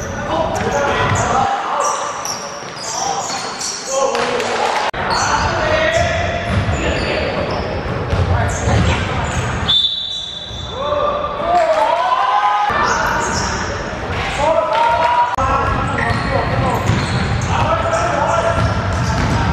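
Basketball game in a large echoing sports hall: players and the bench shouting, the ball bouncing on the hardwood floor, and a short referee's whistle blast about ten seconds in.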